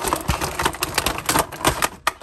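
Pocket knife cutting through plastic tie-downs on a clear plastic clamshell tray, with quick, irregular clicks and crackles from the stiff plastic.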